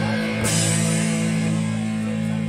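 Rock music: a sustained guitar chord ringing on, with a cymbal crash about half a second in.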